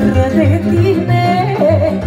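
Female singer with a Romanian folk orchestra, her voice running a fast, wavering, ornamented melody over violins and a steady bass beat.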